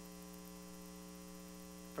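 Steady low electrical mains hum in the sound system.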